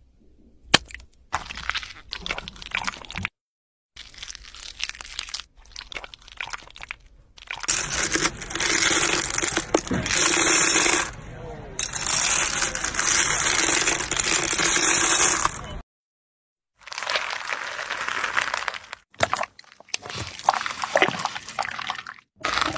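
A run of short clips joined by abrupt cuts. The loudest is a metal scoop digging into a bin of sugar-coated almonds, a dense rattling clatter of hard candy shells lasting several seconds with one brief pause. Softer crackling and cutting sounds come before and after it.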